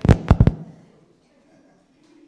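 A quick run of four or five sharp knocks or pops within about half a second, then quiet.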